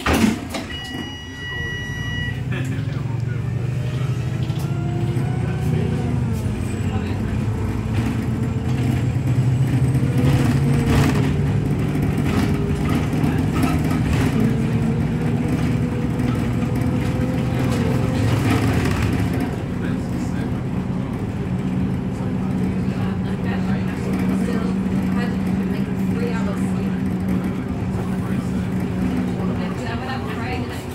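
Bus heard from inside by the doors: the doors shut with a sharp knock, a short electronic tone sounds for about a second, and the bus pulls away, its engine note rising in steps as it gathers speed and then running as a steady drone.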